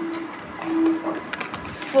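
Hollow plastic stacking ring set onto a plastic ring-stacking tower, making a few light plastic clicks and knocks in the second half.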